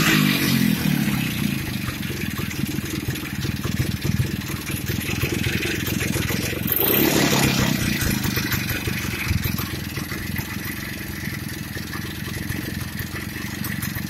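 1950 Victoria KR 25 Aero's single-cylinder two-stroke engine running at a fast idle on its first start-up, its revs settling just after the start and rising briefly about seven seconds in before dropping back.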